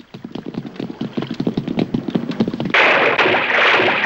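Cartoon sound effects: a rapid clatter of running footsteps on a wooden ship's deck, then, a little under three seconds in, a loud rushing splash as the runners jump overboard into the sea.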